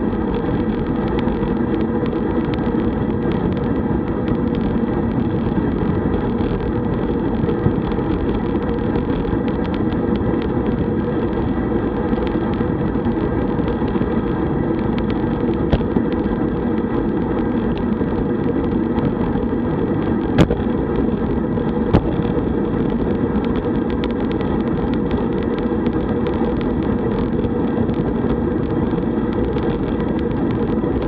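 Steady rush of wind on the microphone and tyre noise from a road bicycle rolling on asphalt at about 30 km/h, with a few short sharp clicks, the loudest about two-thirds of the way in.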